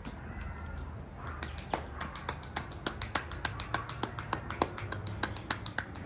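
A quick, irregular run of sharp clicks, about five a second, starting about a second and a half in, over a steady low hum.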